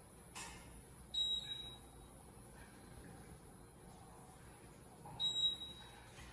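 Otis elevator car's floor-passing beep sounding twice, about four seconds apart, one short high beep as the car passes each floor on the way down. A brief click comes just before the first beep.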